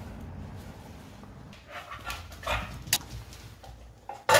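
American bully dog making short, noisy breathing sounds, a few bursts between about one and a half and three seconds in, with one sharp click just before three seconds.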